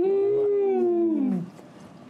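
A person's long, drawn-out 'mmm' hum of relish while tasting food, held steady and then falling in pitch as it ends about a second and a half in.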